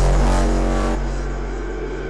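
Hardstyle electronic music: a held deep bass note under a steady synth tone, slowly fading, its bright top end dropping away about a second in.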